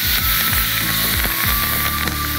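A tomahawk steak frying in butter in a pan, with a steady sizzle and a few light clicks of a metal spoon in the pan.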